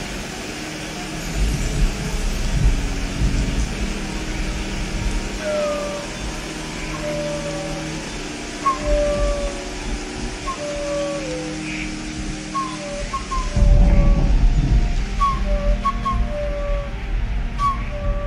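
Live chamber ensemble playing: held string notes under a high melodic line of short, whistle-like notes that slide into pitch, entering about five seconds in. A deep low swell comes near the start and again about 14 seconds in.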